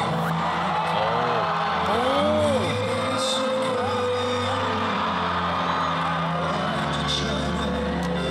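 Instrumental music with long held notes playing over the arena's sound system, while the concert audience cheers and shouts. Separate whoops and screams rise above the music, most of them in the first few seconds.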